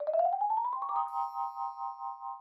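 Added edit sound effect: a fluttering synthesized tone rising in pitch for about a second, then a chord of chime-like tones that pulses and slowly fades.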